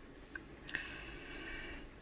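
Quiet room with faint small sounds: a light click about two thirds of a second in, then a soft hiss lasting about a second.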